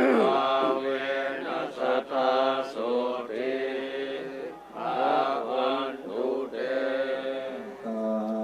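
Group of Theravada Buddhist monks chanting Pali blessing verses in unison. It is a steady, drawn-out recitation whose pitch swoops down at several points.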